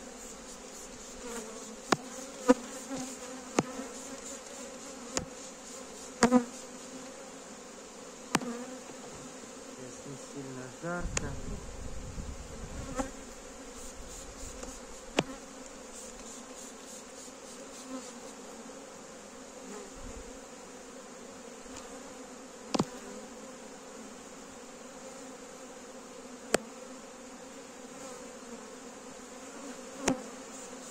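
Honeybees buzzing steadily from an open hive full of bees, a strong colony. Over the buzz come sharp knocks and clicks as the wooden frames are lifted and handled against the hive box, several in the first nine seconds and a few more later.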